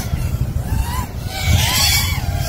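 Brushless motors of a 5-inch FPV quadcopter (DYS 2306-1750kV on 6S) whining in flight, their pitch wavering up and down with the throttle, over a steady low rumble.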